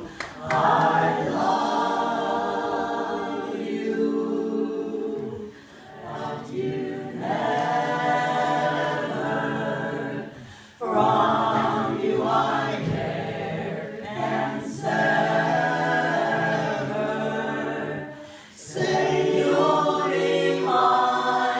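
A small group of voices singing a cappella in harmony, holding long chords in phrases broken by short pauses about 5, 11 and 18 seconds in.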